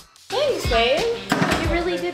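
Background music with a high voice swooping up and down in pitch over a beat, starting after a brief silent gap at the very beginning.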